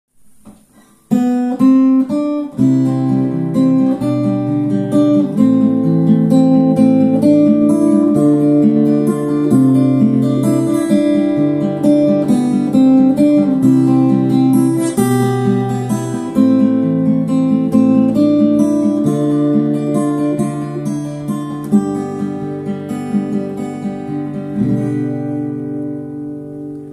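Acoustic guitar playing an instrumental introduction, picked chords over a bass line that changes every second or two. It starts about a second in and tails off toward the end.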